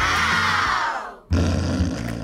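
A crowd 'ooh' sound effect, many voices sliding down in pitch for about a second and cut off sharply. It is followed by a loud, low, rasping snore.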